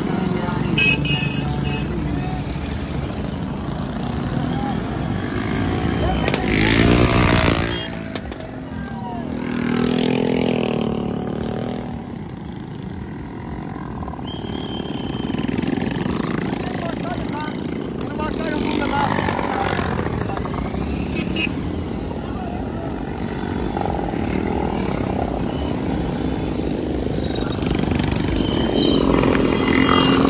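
A string of small motorcycles riding past one after another, their engines rising and falling in pitch as they go by, the clearest passes about seven and ten seconds in, over people's voices calling out.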